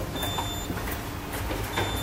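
Orona lift's floor-call button beeping as it is pressed: one high electronic beep of about half a second, then a second, shorter beep near the end as the button lights to register the call. A steady low rumble runs underneath.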